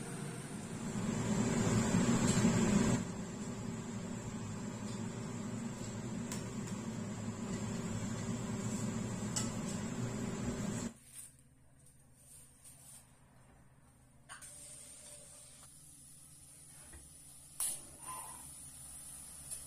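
Steady hum of a kitchen range hood extractor fan running over a stovetop wok, a little louder for a couple of seconds near the start. About eleven seconds in it cuts off suddenly, leaving a quieter stretch with a few light knocks of cookware.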